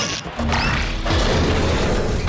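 Mechanical clanking and grinding sound effect of heavy machinery. It starts suddenly, then settles into a dense, steady racket with a low rumble underneath from about half a second in.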